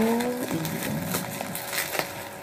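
Plastic bubble wrap crinkling and crackling in the hands as it is pulled off a small box, with scattered sharp little crackles.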